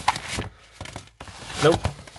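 Cardboard shipping box and paper packing handled by hand: a quick burst of rustling and scraping, then a few light taps.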